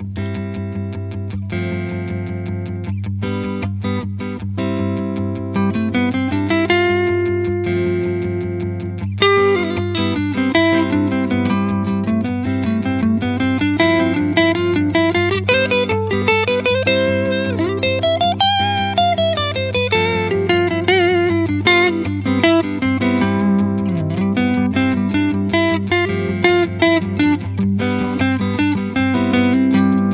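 Electric guitar playing changing chords, then from about six seconds a bluesy single-note lead line with slides and bends, over a steady low G bass note held throughout. It is a demonstration of the mixolydian sound: C major notes played over G.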